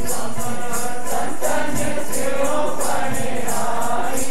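Devotional group singing over a steady beat of jingling hand percussion, about three strokes a second.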